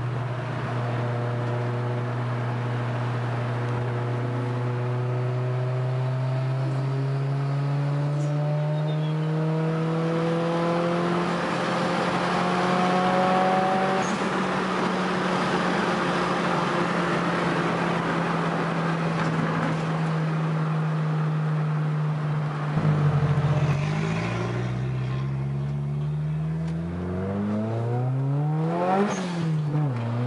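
Engine of a turbocharged Maruti Suzuki Esteem heard from inside the cabin while driving at speed, its revs climbing slowly and steadily. About three-quarters of the way through, the revs fall and climb sharply several times, as with gear changes.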